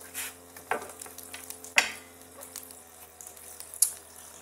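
Tarot cards being handled and shuffled by hand on a glass table: a few short rustles and scrapes, the loudest a little under two seconds in, and a sharp click near the end.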